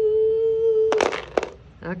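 A voice holds one steady note for about a second, then a handful of dice clatter into a small shallow tray in a quick run of hard clicks lasting about half a second.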